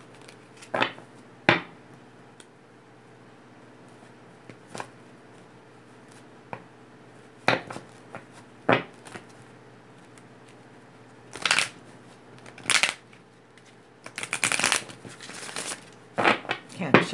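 A deck of tarot cards being shuffled by hand in short separate bursts with quiet gaps between, and a longer run of shuffling near the end.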